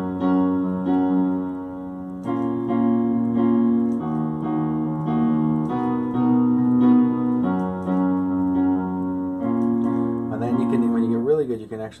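Digital piano playing full chords of a repeating four-chord loop in F-sharp major (D-sharp minor, B major seventh, F-sharp, A-sharp minor seven), each chord restruck in a steady pulse and changing about every two seconds. A man's voice starts speaking near the end.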